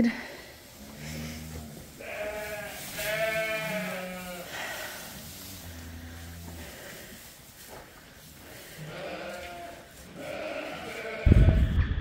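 Sheep bleating in a barn: a long, quavering bleat about two to four seconds in, and a fainter one later. Near the end, wind noise on the microphone comes in suddenly and loudly.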